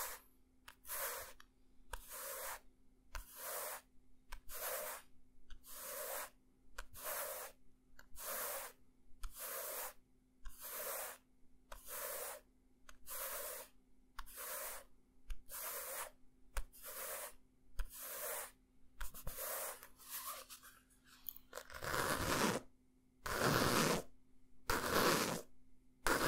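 Fingers rubbing the cover of a hardcover book close to the microphone in steady, even strokes, about two a second. About 22 seconds in it changes to scratching the cover with louder, slower strokes.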